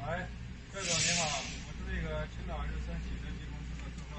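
A man's voice saying a few indistinct words, with a drawn-out hissing 'sss' about a second in that is the loudest sound, over a steady low hum.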